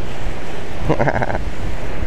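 Steady rush of sea wind across the microphone with ocean surf beneath it, and a brief voice sound about a second in.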